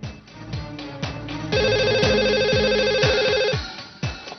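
Landline telephone ringing: one trilling ring about a second and a half in, lasting about two seconds and cutting off, over background music with repeated falling swooshes.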